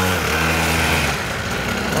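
Small two-stroke mini moto (pocket bike) engine idling steadily, a little softer in the second second.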